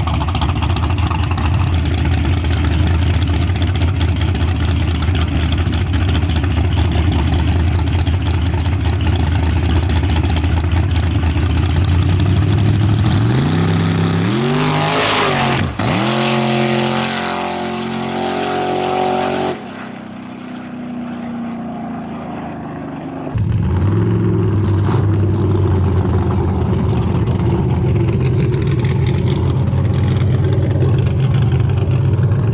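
Drag cars at a street race: loud engines held at the line, then launching about 13 seconds in, the engine note climbing and falling as they pull away down the road and fade. Near the end another car's engine rumbles steadily close by.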